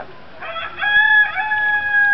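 Rooster crowing: a short broken opening, then one long held note.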